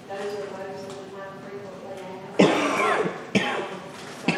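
A person coughs about halfway through, with a second short cough soon after, over low background talk.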